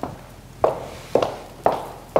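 A man gulping water down from a glass: about four loud swallows in quick succession, roughly two a second.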